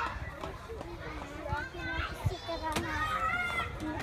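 Children's voices at play, calling out and chattering, with a few short knocks partway through.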